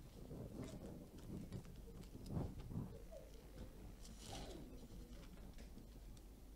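Quiet handling sounds at a pulpit while a Bible is searched. There are two soft low thumps about two and a half seconds in, and a brief papery rustle a little after four seconds, over faint room murmur.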